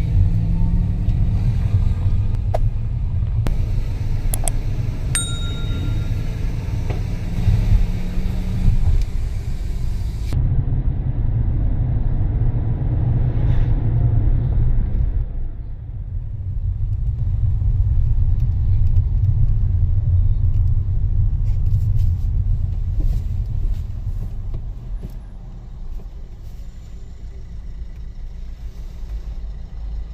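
Car engine and road noise heard from inside the cabin while driving: a steady low rumble. A short ding sounds about four to five seconds in, and the rumble grows quieter near the end.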